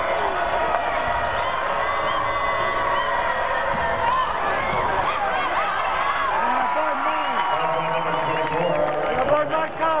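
Basketball game sound in an arena: steady crowd chatter with sneakers squeaking on the hardwood court and the ball bouncing.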